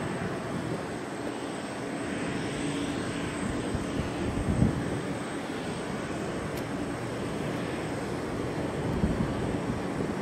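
Boeing 747-400's four turbofan engines running at low taxi power as the jet turns on the airfield: a steady engine rumble and hiss. There is a short louder thump about halfway through.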